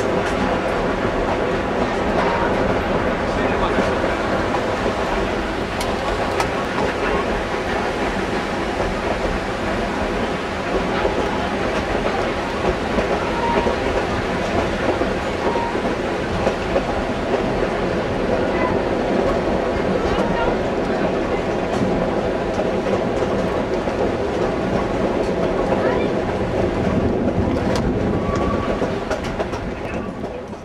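Narrow-gauge passenger train rolling along the track, heard from an open coach window: a steady noise of the wheels on the rails with clicking of the rail joints. It fades near the end.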